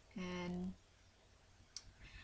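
A woman's short, steady-pitched hesitation sound, held for about half a second, then quiet with a single faint click near the end.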